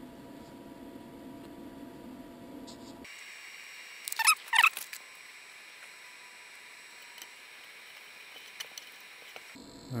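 A low, steady machine hum that changes abruptly about three seconds in to a thinner, higher hum, then two short, loud, high squeaky chirps a little past four seconds.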